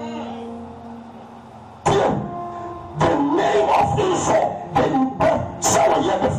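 Live church backing music: a held chord fades for almost two seconds, then a sharp hit brings the music back up with a new sustained chord. From about three seconds in, a man's amplified voice calls out over it.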